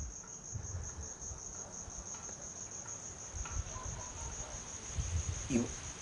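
A cricket trilling: one steady high note with a fine, fast pulse, under faint low rumbles.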